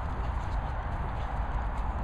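Rhythmic thudding of running footsteps on grass, over a steady low rumble of wind or handling on the microphone.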